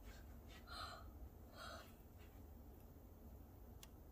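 Two soft, breathy gasps from a young girl, a little under a second apart, in near silence; a faint click near the end.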